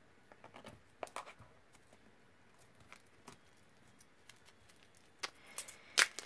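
Fingernails picking and scratching at the clear plastic shrink-wrap on a small hardcover notebook, trying to get it open: faint, scattered clicks and scratches, a few louder ones near the end.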